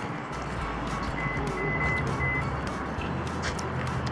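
Steady background noise of a car park, with three short, high electronic beeps a little over a second in.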